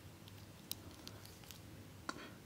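Very quiet room tone with a faint low hum and a few light clicks of the plastic Bakugan Bujin Dragaon figure being handled, the clearest click about a third of the way in.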